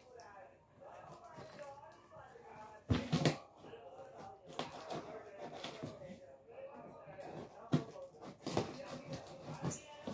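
Hands working at a taped cardboard box, scraping and picking at the packing tape, with a few sharp knocks against the cardboard, the loudest about three seconds in and another near eight seconds.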